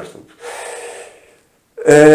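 A man draws an audible breath through the mouth or nose, lasting under a second, in a pause between sentences. A moment of complete silence follows, and his speech starts again near the end.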